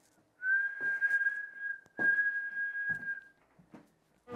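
A person whistling two long, steady notes at the same pitch, with a short break between them and a breathy hiss under each note.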